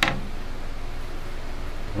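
A single sharp knock at the very start, then a steady low hum and hiss of room background noise.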